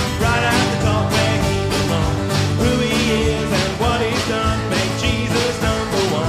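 Live band playing an upbeat song: strummed acoustic guitar and a drum kit keeping a steady beat, with a man singing.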